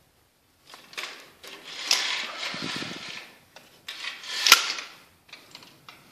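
Horizontal window blinds being worked to test them: slats rattling and clattering in bouts, with sharp clicks and a loud clack about four and a half seconds in.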